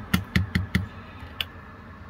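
Rocker switches on a boat's console switch panel clicking as they are flipped: four quick clicks within the first second, then one more about a second later.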